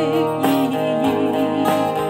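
A woman singing a song into a microphone over guitar accompaniment, her held notes wavering with vibrato.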